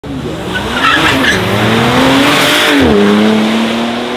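Bentley Batur's 6.0-litre twin-turbocharged W12 engine revving hard as the car launches with tyre squeal. The engine pitch climbs, then drops sharply near three seconds in at an upshift and holds steady.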